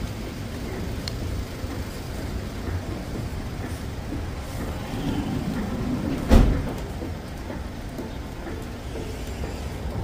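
Steady low rumble of a vehicle running nearby, with one loud, short thump about six seconds in.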